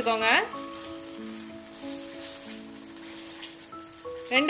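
Battered jackfruit bajji deep-frying in hot oil, a steady sizzle, under background music: a sung phrase ends in the first half second and held instrumental notes carry on after it.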